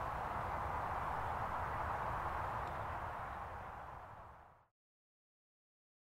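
Steady rushing background noise with no distinct events, fading over a second or so and then dropping to dead silence about four and a half seconds in.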